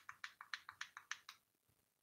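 Vape pen battery button clicked in a quick, even run of about ten small clicks, some seven a second, stopping about a second and a half in: the presses getting the pen ready to use.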